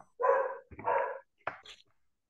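A dog barking twice, followed by a couple of short clicks.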